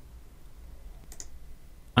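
A single faint computer mouse click about a second in, loading a list page with one click, over a low steady hum.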